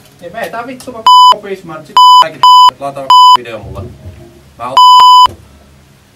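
Five loud censor bleeps cutting into someone's talk, blanking out swear words. The first four are short, and the last, near the end, is a little longer.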